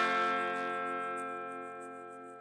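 Closing chord of the trailer's guitar music, struck once and left ringing, slowly fading.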